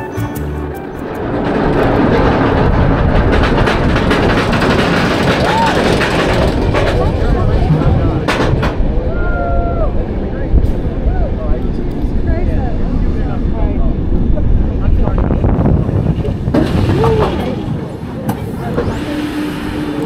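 Wind buffeting a front-row ride camera's microphone, with the rumble of a B&M floorless dive coaster train rolling around the turn at the top of its lift hill. The noise is loud and gusty and continues throughout.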